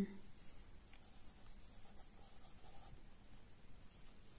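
Pencil writing a short word on a workbook page, a faint scratching of graphite on paper.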